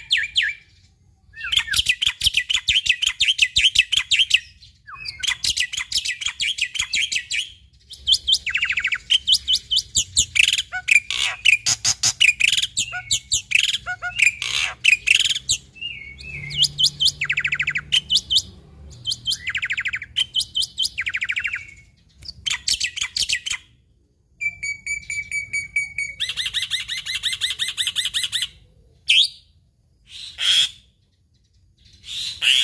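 Black-winged starling (jalak putih) singing a varied run of very rapid, rattling trills in bursts of one to three seconds with short pauses, packed with mimicked phrases. Near the end comes a stretch of clear, evenly pitched whistled notes.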